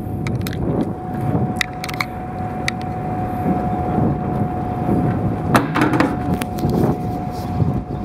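Fishing boat's engine running with a low rumble and a steady whine that stops near the end, with scattered sharp knocks and clatter on the deck.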